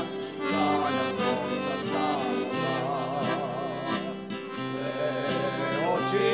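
A small folk band led by accordion, with guitar and violin, plays a Bulgarian old urban song (starogradska pesen). A male vocal group sings over it, with fuller singing coming in at the very end.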